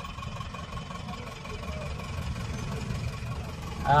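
A car's engine and tyre noise heard from inside its cabin: a steady low rumble in slow traffic.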